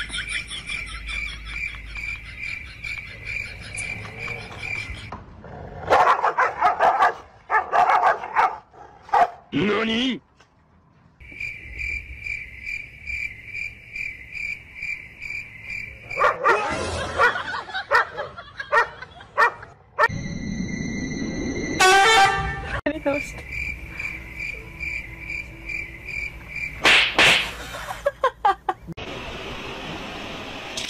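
Two dogs barking and snarling at each other across a fence, in several loud bursts, with a high pulsing tone repeating about three times a second in between.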